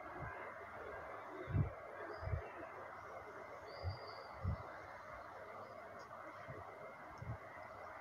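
A steady low hiss from the gas burner under a metal pot of frying masala, with a few soft, dull thuds scattered through as it is stirred with a ladle.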